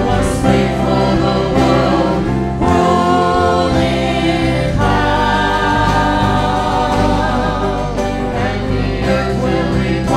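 Live gospel worship music: singers and a band, including an acoustic guitar, performing a song with long held chords.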